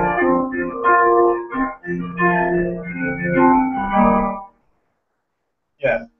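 Electronic keyboard played in held chords, heard through a video call's compressed audio. The playing stops about four and a half seconds in, and a short laugh follows near the end.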